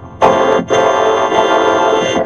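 Cartoon soundtrack run through a 4ormulator vocoder effect, turned into a loud, buzzy, chord-like synthesized sound. It cuts in sharply just after the start and dips briefly about two-thirds of a second in.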